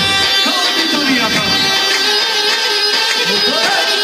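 Live amplified Albanian folk-style wedding band music, loud, with a wavering melody over steady held chords.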